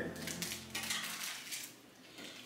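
Light clicks, taps and rustles of candy and decorating supplies being handled and set down on a glass tabletop.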